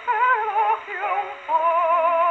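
Mezzo-soprano singing with strong vibrato, played from a 1910 acoustic 78 rpm disc on a horn gramophone, the sound thin and lacking high treble. A short phrase of changing notes gives way to a long held note about one and a half seconds in.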